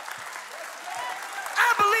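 A congregation applauding, a steady patter of many hands clapping, with the preacher's voice coming back in near the end.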